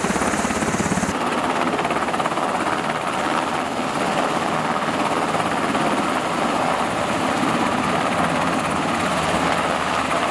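Navy MH-60R Seahawk helicopter at full rotor speed, lifting off and hovering: a steady, loud thrum of rotor blades over turbine engine noise.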